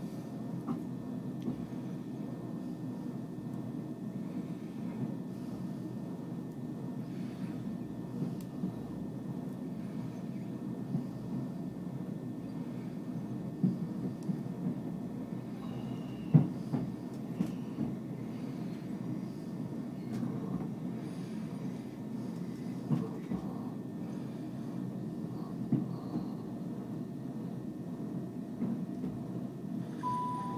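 Cabin noise inside a Southern Class 377 Electrostar electric multiple unit pulling out of a station: a steady low rumble of the train running on the rails, with occasional sharp knocks, the loudest about sixteen seconds in.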